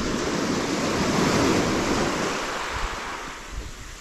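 Sea surf breaking and washing up the shore close by, a loud continuous rush of water that eases a little toward the end as the wash draws back, with some wind on the microphone.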